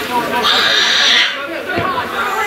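A person shouting: one high, drawn-out call lasting about a second, starting about half a second in, with other voices around it.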